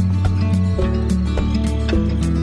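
Intro music: held pitched notes over a steady beat of about four clicks a second.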